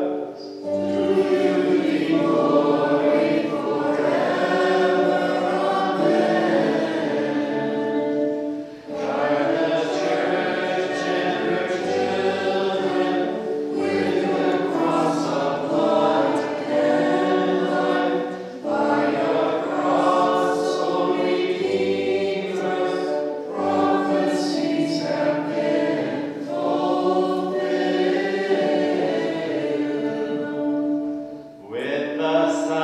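A group of voices singing a liturgical hymn together in long, held phrases, breaking briefly every four to five seconds.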